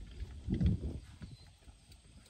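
A man's brief low vocal sound about half a second in, with a few faint clicks around it.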